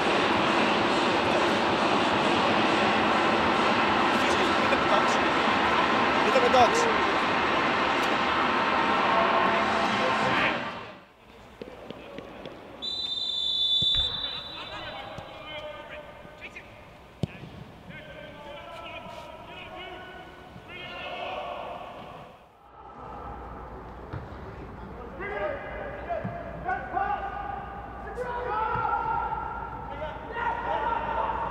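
A loud, continuous din that cuts off abruptly about eleven seconds in. Then, in an empty football stadium, a short referee's whistle, the thud of a football being kicked now and then, and players shouting to each other.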